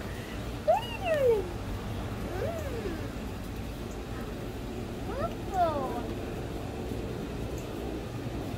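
A cat meowing three times, each call rising and then falling in pitch, over a steady low hum.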